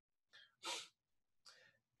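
A man's single short, quick breath, about two-thirds of a second in, amid near silence.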